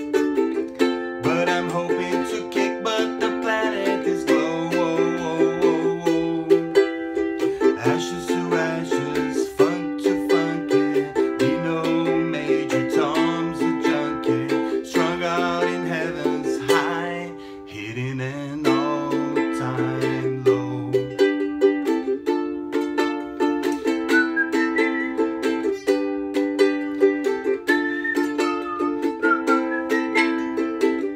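Ukulele strummed in a steady chord rhythm in a small room, with a low, held melody line under it for most of the first two-thirds. Near the end a wavering, whistled-sounding melody joins in.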